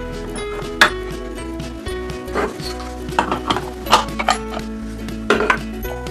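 Light background music under several short plastic clicks and knocks, spread across a few seconds, as a toy ice cream cone and scoop are handled.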